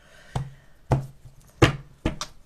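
A few sharp knocks on a tabletop, unevenly spaced, as a tarot deck and cards are handled.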